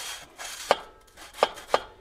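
Hands handling the bicycle's seat post: swishing rubs and three sharp clicks, the last two close together near the end.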